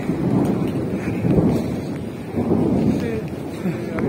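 Rolling thunder: a long, uneven low rumble that swells and fades, with rain falling.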